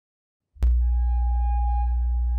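Synthesized intro sound effect: after half a second of silence a sudden hit opens a loud, steady deep hum, with a clear high tone held over it.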